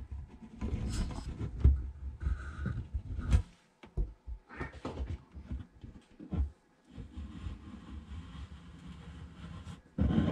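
Irregular handling noises under a galvanized steel sink: light knocks, rubs and short clicks as silicone is applied around the drain fitting and the drain nut is worked by hand and with pliers.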